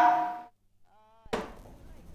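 A woman's voice over a microphone breaks off in the first half-second, then a brief dead silence. A single sharp click a little over a second in, like an edit cut, is followed by a faint low hum.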